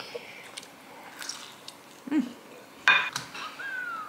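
Light clinks and a sharper clatter about three seconds in from a small plate being handled at the table, with a soft closed-mouth "mm" about two seconds in. Near the end comes a short falling whine as a toddler's runny nose is wiped with a tissue.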